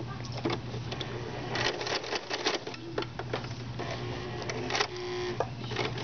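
Sewing machine stitching with a ruffler foot attached: the motor runs steadily while the needle and foot clatter in a rapid run of clicks as the fabric is gathered.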